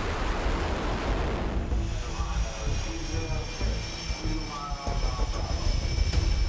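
F/A-18 jet landing on a carrier deck: a rush of jet noise for about the first two seconds, settling into a steady high-pitched engine whine over a continuous deep rumble.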